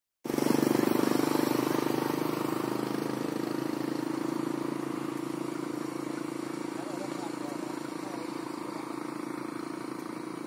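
A small engine running steadily with an even pulsing note, loudest just after the start and slowly fading.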